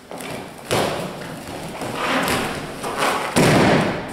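Thuds and cloth rustling as an aikido partner is thrown with a kotegaeshi wrist throw and falls onto foam mats. The loudest thud, his landing, comes about three and a half seconds in, after a first sharp thud under a second in.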